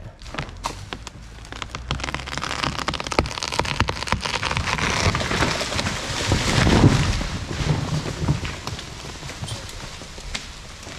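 A rotten dead fir tree cracking and snapping at its hinge as it is pulled over. The crackle of breaking wood and falling bark and limbs builds to a heavy crash as the trunk hits the ground about seven seconds in, then dies away.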